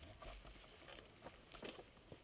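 Near silence: faint scattered clicks and scuffs, a little louder about three-quarters of the way through, with no engine running.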